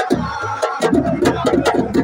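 Live drumming: drums struck with sticks in a fast, dense rhythm, with voices over it.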